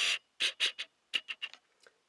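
Camera's autofocus lens motor ticking as it hunts for focus: a quick run of small clicks, several a second, with a short pause about a second in and a brief hiss at the very start.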